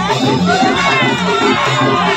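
Dance music with a repeating bass line, mixed with a crowd of voices shouting and cheering.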